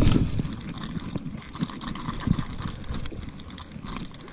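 Worn, rusty 50-year-old baitcasting reel being cranked by hand, its gears giving off a fast run of rough clicks; the reel is starting to seize up.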